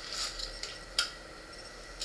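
Rustling and light clinking of small gear being rummaged through in a backpack's front pocket, with one sharp click about a second in.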